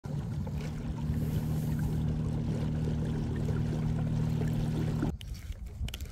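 A small motor running with a steady low hum, with light water noise, that stops abruptly about five seconds in.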